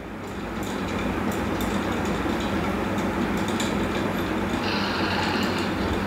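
Steady rushing static with a low hum underneath, building over the first second and then holding: noise on the audio line during a connection disturbance, which the speaker blames on an incoming phone call.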